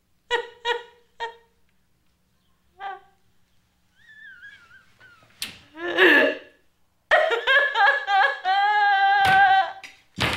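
A woman sobbing: short choked sobs in the first three seconds, a wavering whimper, then a louder cry and a long drawn-out wail near the end. A sharp smack comes a little past halfway.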